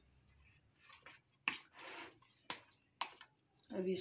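Metal spoon stirring chicken pieces through a thick yogurt marinade in a plastic bowl: three sharp clicks of the spoon against the bowl, with softer wet stirring noise between them.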